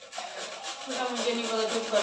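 White radish (mooli) being grated by hand on a metal box grater: a steady run of rasping scrapes, one for each stroke.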